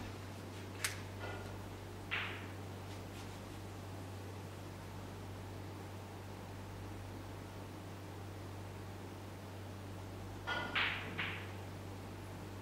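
Quiet snooker-hall room tone: a steady low hum, with a few faint short clicks and knocks. One click comes about a second in, another sound about two seconds in, and a quick cluster of three near the end.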